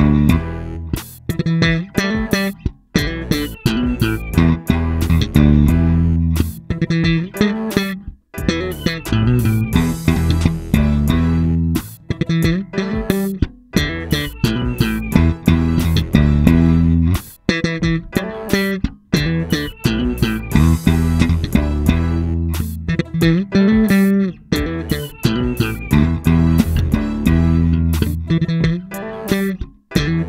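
Electric bass guitar playing a busy solo line of short plucked notes, broken by a few brief stops.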